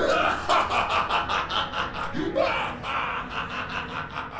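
A cartoon villain's drawn-out evil laugh: a long run of rapid repeated 'ha's, with a fresh burst of laughter about two seconds in.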